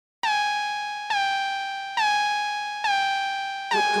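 A single synthesizer note struck four times at an even pace, a little under a second apart, each with a sharp attack and a slow fade, like a horn-like synth stab opening a track.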